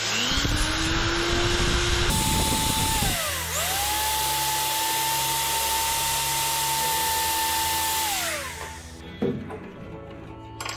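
Electric belt file (narrow-belt power file) spinning up and sanding the edge of a small steel patch plate. Its motor pitch dips a few seconds in, then holds steady before it runs down near the end.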